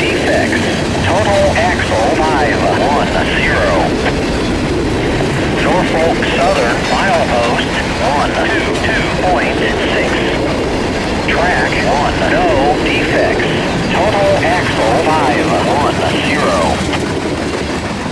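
Freight cars of a manifest train rolling past, a continuous rumble and clatter of wheels on rail with wavering squealing tones coming and going over it. The sound eases near the end as the last cars go by.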